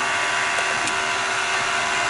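Steady rushing cabin noise inside a car as it drives, an even hiss with a faint hum underneath.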